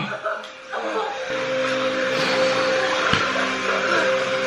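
Soundtrack of a TV drama episode: a steady low hum of several held tones sets in about a second in, with a single dull thump about three seconds in.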